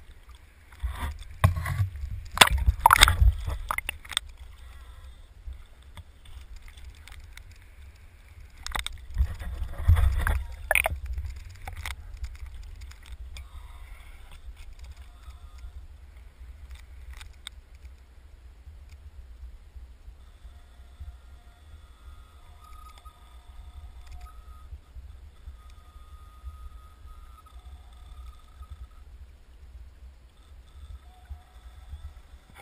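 Muffled rush of river current heard through an underwater camera, with clusters of knocks and splashes about a second in and again around nine to eleven seconds as the salmon is handled and released.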